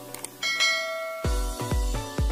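Subscribe-animation sound effects: a few quick clicks, then a bright notification-bell ding that rings out for most of a second. About a second and a quarter in, electronic dance music with a heavy kick drum about twice a second starts up.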